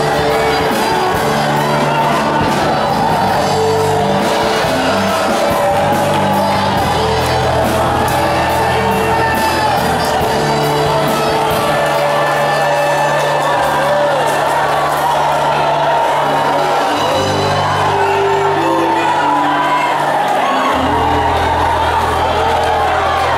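Loud live worship music with a sustained bass line that changes note every few seconds, and a congregation's many voices singing and calling out over it.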